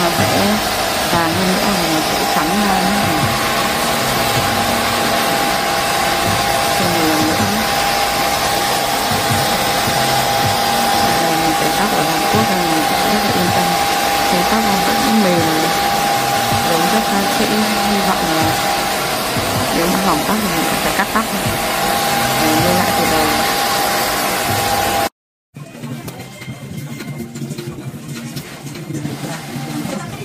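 Hand-held hair dryer blowing, a loud, even rush with a steady high whine. It cuts off suddenly about five seconds before the end, leaving a much quieter room.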